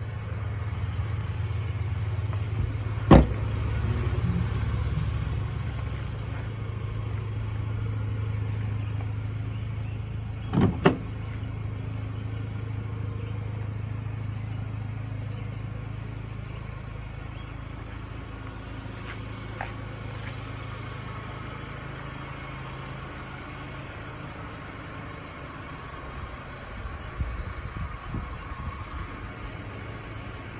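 A 2024 GMC Canyon AT4's 2.7-litre turbocharged four-cylinder engine idling with a steady low hum, which fades in the second half. A sharp thump comes about three seconds in and a double thump near eleven seconds.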